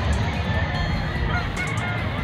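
Steady din of a crowded exhibition hall full of gamefowl, with roosters calling faintly within it.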